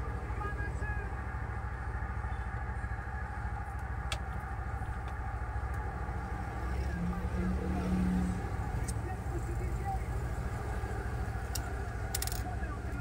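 Steady background rumble of motor traffic, swelling louder about seven to eight seconds in as a vehicle passes, with a few faint clicks of plastic printer parts being handled.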